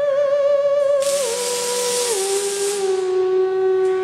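Moog Etherwave theremin playing a slow falling line of held, wavering notes: it steps down twice and settles on a low sustained note. A hiss sounds over it from about a second in to nearly three seconds in.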